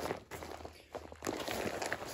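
Crinkling and rustling of a printed fabric food hang bag, packed with food, as it is handled and turned over: a dense run of small crackles that grows louder about a second in.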